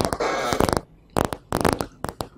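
A short rasping rustle lasting under a second, then a few sharp knocks and clicks: handling noise at a desk close to the microphone.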